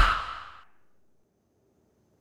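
A loud, harsh noise burst from a horror glitch sound effect, the picture breaking up, dies away within the first half second. Near silence follows.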